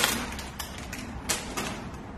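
A thin plastic bag crinkling and rustling as a folded cloth is pulled out of it, with a sharper crackle just past a second in.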